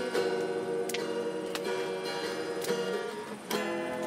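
Slow acoustic guitar music, plucked notes held and changing about once a second, with sharp clicks here and there.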